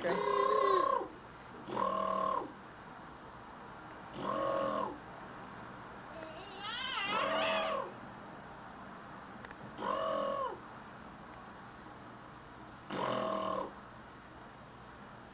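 A man making short, strange, animal-like vocal noises, six in all, each a held low tone under a second long, a couple of seconds apart.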